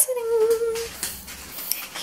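A person humming one short held note, just under a second long, starting right after a sharp click.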